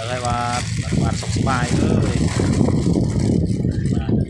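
A person talking, briefly at the start and again about a second and a half in, over a steady low rumble of background noise.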